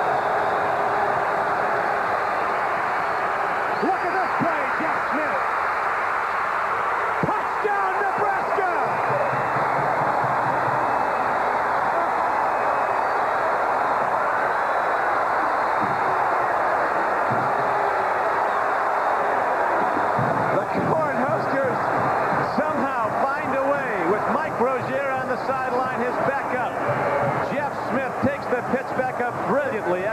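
Large stadium crowd cheering and shouting continuously during a football play, growing louder and more uneven in the last third as a touchdown is scored.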